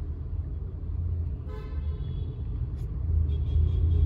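Steady low vehicle rumble, with a short car horn toot of about half a second, about a second and a half in.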